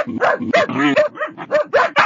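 Dogs barking in a quick run of short barks, several a second.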